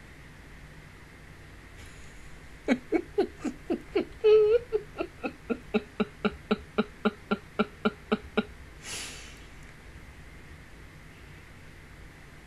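A woman laughing hard: a long run of quick, even "ha" pulses, about four a second, with one short held note early in the run. It ends with a gasping in-breath.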